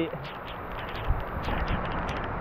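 Heavy rain pouring down: a steady hiss of the downpour, with a scatter of sharp ticks from drops striking close by.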